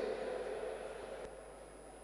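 A public-address announcement's echo dying away in a large indoor athletics hall over about a second, leaving faint steady hall ambience with a thin, high steady whine.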